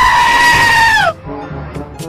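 A loud, long, high-pitched scream held for about a second and a half, its pitch sweeping up at the start and dropping away as it ends, over background music.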